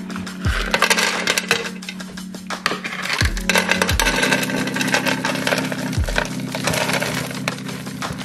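Crunchy snack mix of nuts and sesame sticks poured from a jar into an empty clear plastic canister, the pieces rattling and clattering as they hit the bottom and pile up, over background music with a beat.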